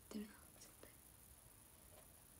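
Near silence: room tone after the last soft words, with a couple of faint light ticks just under a second in.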